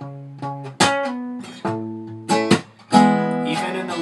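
Acoustic guitar fingerpicked with thumb slaps: the thumb hits the low string percussively and the fingers then pluck the notes of the chord, giving a few sharp slaps among ringing chords.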